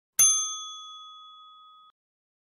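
Notification-bell 'ding' sound effect of a subscribe-button animation: one bright chime struck once, ringing and fading for about a second and a half before cutting off.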